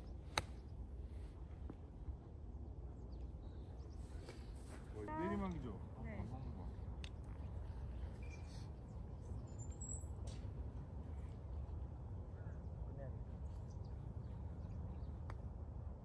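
An iron striking a golf ball on a chip shot: one sharp click just after the start. A short voice call comes about five seconds in, over a steady low background rumble.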